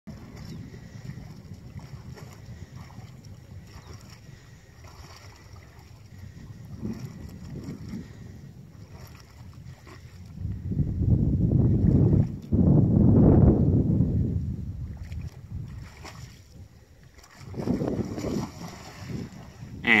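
Wind buffeting an outdoor microphone, a low rumble that gusts much louder from about halfway through and again near the end.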